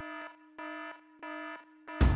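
Electronic buzzer-like beeping from an edited-in transition sound effect: a buzzy, alarm-like tone pulsing on and off about every 0.6 seconds, three beeps with a fourth starting at the end.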